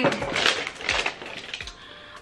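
Paper and packaging rustling and crinkling as things are pulled out of a box, busiest in the first second and then dying down.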